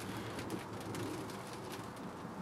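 A pigeon cooing faintly over quiet greenhouse room tone.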